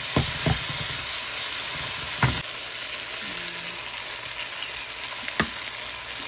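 Oil sizzling in a non-stick frying pan as chopped aromatics are stirred, with several knocks and scrapes of a wooden spatula in the first couple of seconds. The sizzle drops a little about halfway through, and a single sharp tap comes near the end as an egg is cracked.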